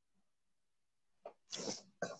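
Near silence, then near the end a person's short, breathy vocal burst, just before speech resumes.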